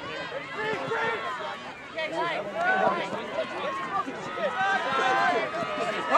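Several voices shouting over one another from players and sideline spectators during a point of an outdoor ultimate game, with no words clear. The shouting grows busier in the second half.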